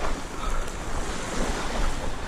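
Wind buffeting the microphone over small waves washing onto a shallow sandy shore.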